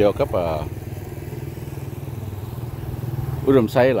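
A small motorcycle engine running steadily at low revs, a low even hum, between bits of a man's talk.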